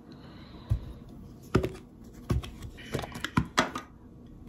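Tableware being handled on a table: a ceramic bowl with a metal spoon in it set down, giving about half a dozen light knocks and clicks, closer together near the end.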